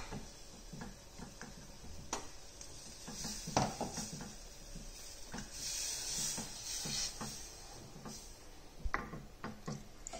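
Wooden spoon stirring milk into a flour-and-butter roux in a stainless steel saucepan: faint scraping with light taps of the spoon against the pan, a few sharper clicks about two, three and a half and nine seconds in.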